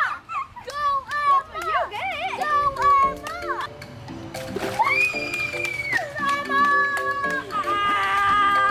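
Young children shouting and calling out in high voices, with background music coming in about two seconds in and carrying the rest.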